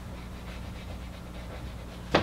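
Whiteboard eraser rubbing marker writing off the board, a soft steady wiping over a constant low electrical hum.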